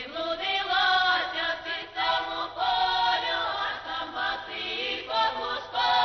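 A choir singing in phrases, the voices holding notes and sliding between them, with short breaks between phrases.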